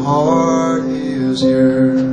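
Live band music: a slow song with guitar and several held notes layered over one another, some sliding in pitch.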